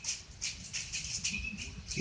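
Light rustling and rattling as a small gift box and the tissue paper packed around it are handled.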